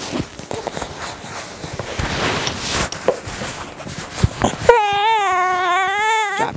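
Fabric and straps rustling with small clicks as a newborn is lifted out of a buckle carrier. About three-quarters of the way in, the baby gives one long, wavering, high-pitched cry.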